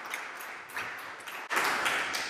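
Audience clapping: a dense patter of irregular claps that grows suddenly louder about three-quarters of the way through.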